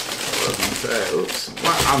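Tissue paper crinkling and rustling inside a cardboard shoebox as hands rummage through it, a rapid, irregular run of small crackles.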